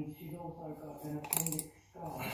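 Keyless chuck of a Milwaukee M18 cordless combi drill being hand-tightened onto a tap, giving a short run of ratcheting clicks about one and a half seconds in.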